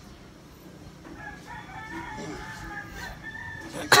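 A rooster crowing: one long, drawn-out crow that starts about a second in and lasts a little over two seconds.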